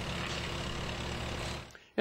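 1947 Farmall H tractor's four-cylinder engine running steadily, fading out near the end.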